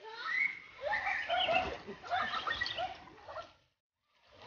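Several voices calling out and laughing over one another, with water splashing.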